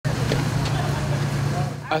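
A parked bus's engine idling, a steady low hum.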